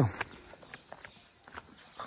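Faint footsteps of a person walking along a path, a few light scuffs spread through the quiet.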